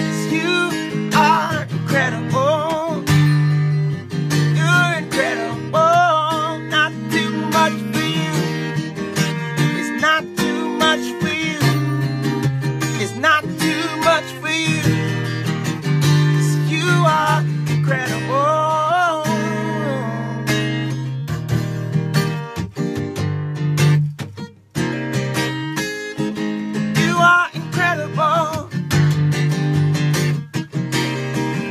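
Acoustic guitar strummed in steady chords, with a man's voice singing over it.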